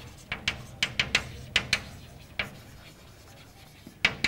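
Chalk writing on a blackboard: a quick run of short taps and scratches through the first half, then quieter.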